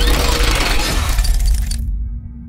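Cinematic logo-intro sound effect: a loud, dense metallic clatter and crash over a deep bass rumble, its high end cutting off suddenly near the end.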